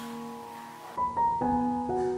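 Soft background piano music: held notes fade out, then new notes are struck about a second in and again near the end.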